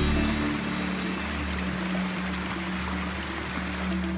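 Small stream of water rushing steadily over rocks, heard under background music with low sustained notes.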